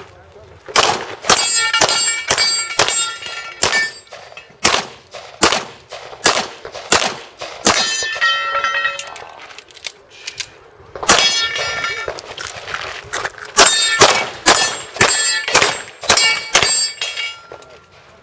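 Pistol fired in fast strings of shots, with short pauses between strings and the longest lull around nine to eleven seconds in. Many shots are followed by the ringing clang of steel targets being hit.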